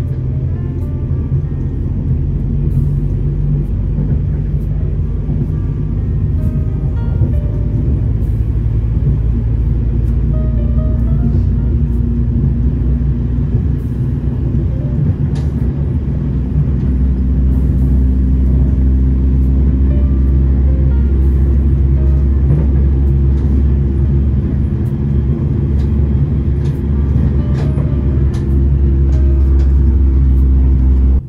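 Steady low rumble of an electric commuter train running along the track, heard from inside the carriage. It grows louder about halfway through and again near the end.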